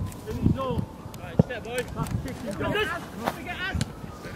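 Footballers' shouts and calls carrying across an open pitch, several voices overlapping over a noisy background. A single sharp knock sounds about a second and a half in.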